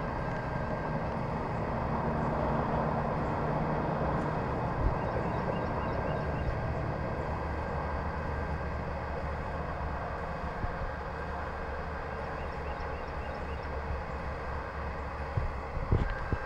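A steady mechanical rumble with a low hum, swelling a little a few seconds in and easing slightly toward the end.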